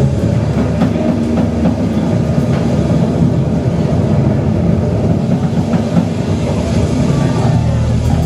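A loud, low, churning rumble from a live rock band, with cymbals and the higher instruments largely dropped out, leaving a dense bass-heavy wash.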